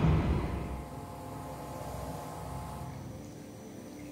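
A low rumbling noise that fades away within the first second, leaving a faint steady hum with a few held tones; the higher part drops out about three seconds in.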